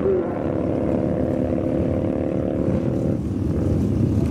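Drag-racing motorcycle engines running with a steady, slightly falling note that changes about three seconds in.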